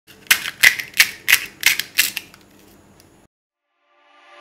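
Crisp fried pani puri shells cracking and crunching: about six sharp, crackly crunches at roughly three a second, then dying away after about two seconds.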